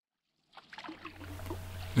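Water sounds of a canoe being paddled, fading in from silence about half a second in: paddle strokes and water moving along the hull, growing louder.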